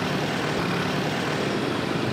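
Steady roadway traffic noise from motorbikes and cars passing on a busy highway.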